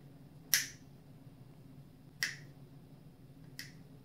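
Three sharp metallic clicks from a steel surgical clamp working in the toenail groove, the first about half a second in and the others at gaps of about a second and a half, each quieter than the one before.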